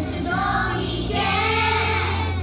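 A group of young children singing a song together, with steady musical accompaniment sounding underneath the voices.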